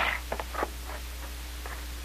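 Radio-drama sound effect of a safe's combination dial being turned: a few light, irregular clicks, clearest in the first second and fainter after, as the safe is worked open.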